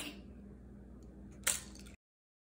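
A single sharp crack about one and a half seconds in, an egg being tapped against the rim of a bowl, over quiet kitchen room tone.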